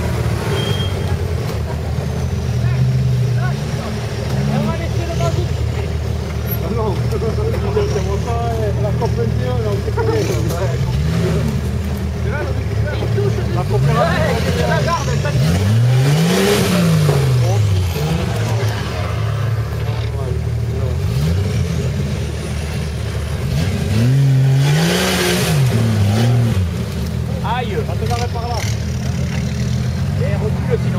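Off-road 4x4 engines running at low revs, revving up and dropping back several times, most in the middle and again near the end, as the vehicles work their way over a muddy slope. Voices talk indistinctly over the engines.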